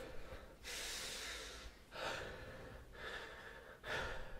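Three breaths taken close to the microphone, each a soft airy rush about a second long, the first the longest, with short pauses between them.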